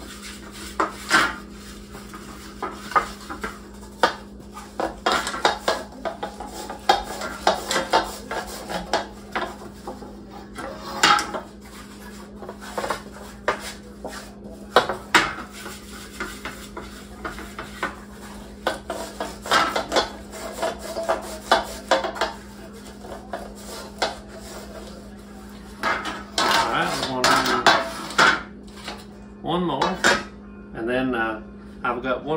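Thin fluted metal pie pans clinking and scraping against a wooden tabletop as they are handled and greased by hand, in irregular knocks and rubs, busier near the end.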